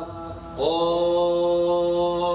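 A man's voice reciting the Quran in Arabic in melodic chant (tajweed). After a brief pause, he holds one long elongated vowel at a steady pitch from about half a second in.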